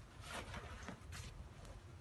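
Faint rustling of a cloth baseball cap being handled and turned over, with a few soft scuffs.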